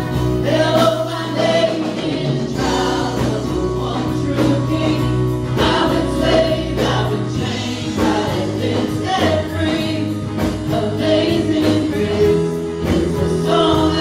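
A live gospel worship band with drums and bass backing a group of singers, with a steady beat throughout.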